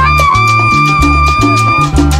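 Salsa band playing live, with a long high saxophone note held for nearly two seconds over bass and percussion.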